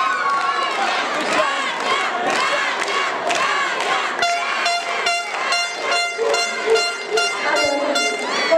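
Audience cheering and shouting. From about halfway through, a handheld air horn sounds in rapid short blasts, roughly three to four a second, over the cheering.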